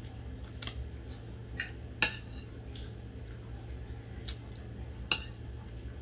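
Metal spoon clinking and scraping against a plate while eating rice, with a few sharp clinks: the loudest about two seconds in, another about five seconds in. A low steady hum runs underneath.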